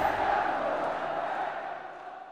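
Intro sound effect of a crowd roar, fading out steadily over the two seconds.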